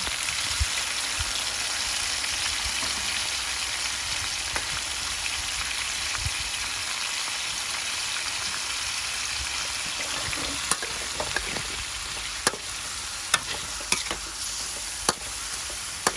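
Sliced beef sizzling steadily as it fries in a metal wok. In the last third, a metal spatula clinks sharply against the wok about once a second as the beef is stirred.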